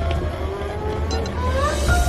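Steady low rumble of a moving train carriage under a film score. Near the end a rising tone climbs into a held note.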